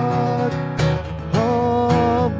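A man singing to his own strummed acoustic guitar. A sung note is held into the first half second, the guitar strums on alone for a moment, and a new sung phrase comes in about one and a half seconds in.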